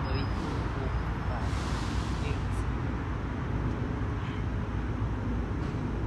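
Steady outdoor background noise: a low rumble of distant road traffic, with faint voices in the distance.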